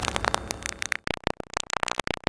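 Digital glitch sound effect: rapid stuttering crackles of static that grow sparser and more broken toward the end.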